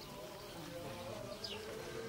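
Faint drone of many voices singing long held notes, a chant from a crowd, with a short high chirp about one and a half seconds in.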